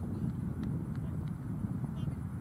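Wind buffeting an outdoor microphone: an uneven low rumble, with a few faint ticks above it.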